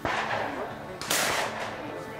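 Two gunshots about a second apart, each with a long echoing tail.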